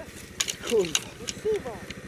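Yamaha Grizzly 660 quad's single-cylinder four-stroke engine running steadily as the machine ploughs into deep snow, with short sharp clicks over it.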